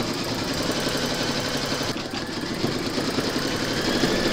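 Embroidery machine stitching a tack-down round through fabric and water-soluble stabilizer held in the hoop. It makes a rapid, steady needle rhythm.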